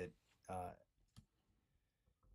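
A single faint sharp click about a second in, with a few fainter ticks around it, amid near silence between spoken words.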